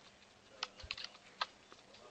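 Computer keyboard being typed on: a handful of faint, unevenly spaced keystrokes as a terminal command is entered.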